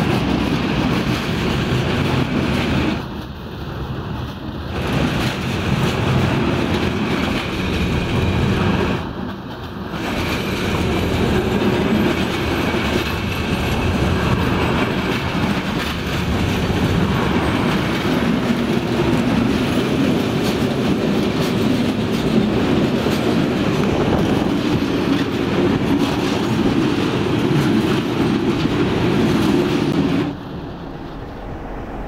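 Freight train wagons rolling past at speed on the track, then a railway ballast tamping machine at work, its tamping tines vibrating down into the ballast with a steady heavy mechanical noise.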